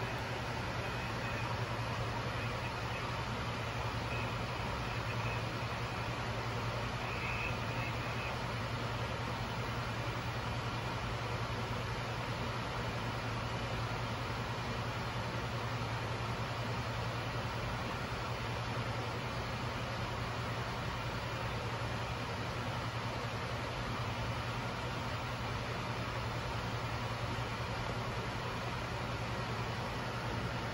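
Steady jet airliner-style flight deck noise at cruise altitude: an even rush of airflow and engine noise with a constant low hum, unchanging throughout. A few faint high tones sound in the first several seconds.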